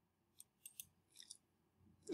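Five faint, quick clicks of a computer mouse.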